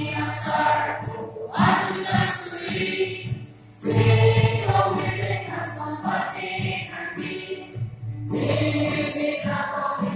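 A choir of young women singing a Karbi traditional welcome song together, accompanied by acoustic guitar. The singing comes in phrases with short breaks between them, about a second and a half in and again just before the middle.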